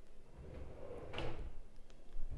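Kitchen base-cabinet pull-out drawer sliding on its runners, with a short knock a little over a second in.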